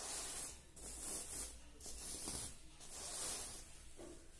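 A hand brushing across a reversible sequin cushion cover, the sequins flipping with a crisp swish on each stroke, several strokes in a row.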